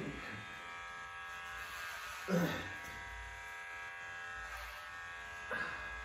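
Electric hair clippers running with a steady, even buzz while cutting long hair.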